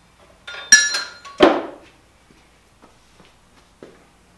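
Steel forging dies being handled and set down against metal. There is a ringing clink about three quarters of a second in, a duller, heavier clank half a second later, then a few light taps.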